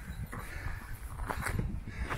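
Footsteps scuffing on a dry dirt and gravel trail, a few irregular steps, over a low rumbling noise.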